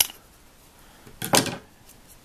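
Scissors cutting through a twisted cord: a sharp click right at the start, then a short scraping snip about a second and a quarter in.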